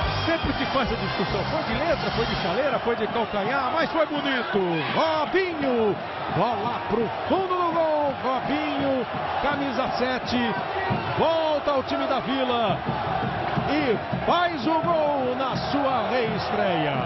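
A football TV commentator's excited shouting over the steady noise of a stadium crowd after a goal.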